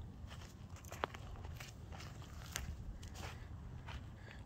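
Faint footsteps on dry, sandy desert ground, with a couple of sharp clicks about one and two and a half seconds in.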